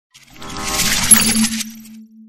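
Logo intro sound effect: a shimmering swell that peaks in a bright chime about a second in, then dies away, leaving a low steady hum.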